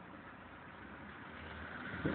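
Faint sound of a car engine running in the distance as the car slides across the snow, under a steady low hiss; it grows a little louder toward the end.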